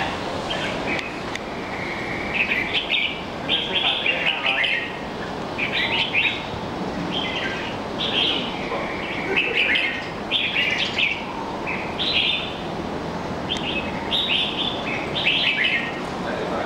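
Caged red-whiskered bulbul singing: short, clear phrases, one every second or so, kept up without a break.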